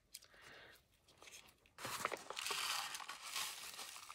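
Paper crinkling and rustling as a floral-printed paper sachet packet is handled and rolled into a spout, starting just under two seconds in after a few faint ticks.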